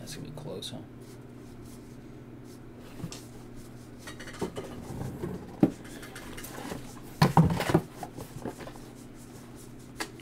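A stack of baseball trading cards being leafed through by hand, card after card slid and flipped, giving scattered soft clicks and snaps of card stock, with a louder flurry a little past the middle.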